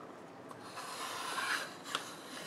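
Compass circle cutter's blade scraping through white card as its arm is dragged around the centre pivot, a soft scrape that grows louder toward the end.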